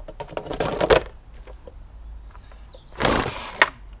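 Recoil starter cord of a Partner hedge trimmer pulled twice by hand to test compression, each pull a short whirring rasp: once just after the start and again about three seconds in. The engine turns over against good compression without starting.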